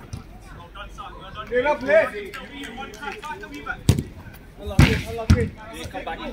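A football being kicked: three sharp thuds, one about four seconds in and two close together near the end, with players' shouts in between.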